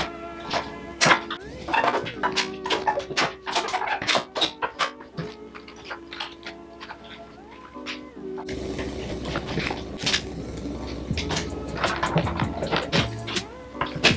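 Mellow instrumental background music with steady sustained tones over sharp clicks; a deeper bass fills in a little past halfway.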